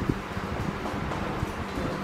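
Cloth wiping marker writing off a whiteboard: a soft, irregular rubbing noise, over a steady low hum.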